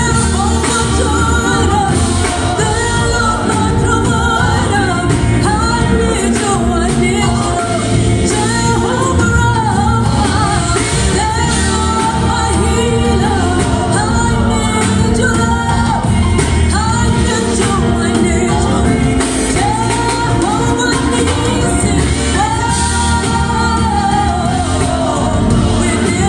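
Live band music with a woman singing lead into a microphone and a group of backing singers, played loud and continuous through a PA.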